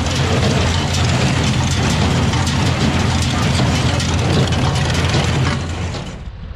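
New Holland small square baler working in hay: the pickup tines and drive clatter steadily over the low, even hum of the tractor engine pulling it. The noise falls away shortly before the end.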